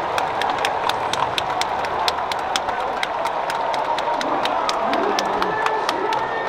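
Baseball stadium crowd cheering a home run, with a steady roar and a dense patter of sharp claps. A few voices shout out near the end.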